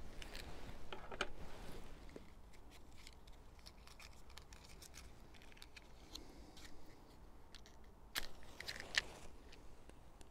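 Small clicks and rustling handling sounds, then about eight seconds in a sharp strike followed by a second of rushing noise: a match struck and flaring as it is held to a tobacco pipe to light it.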